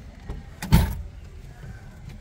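A single heavy thump inside a car, about three-quarters of a second in, over the low steady rumble of the car cabin.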